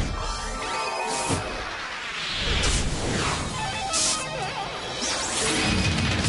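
Instrumental opening of a band's rock song, with keyboard and drums. A few sudden crash-like hits land about a second, two and a half seconds and four seconds in.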